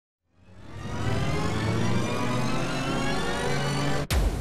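Logo intro sound effect: a rushing swell of noise that fades in over the first second, with a low hum underneath and tones gliding steadily upward, building until it breaks off sharply at the very end.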